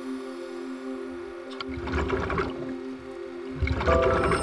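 Ambient background music holding long, steady low notes. A scuba diver's regulator lets out two rushing bursts of exhaled bubbles, one about two seconds in and a louder one near the end.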